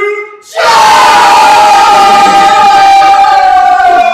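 A group of voices letting out one long, very loud shout together. It starts suddenly about half a second in and is held for over three seconds, its pitch sinking slightly.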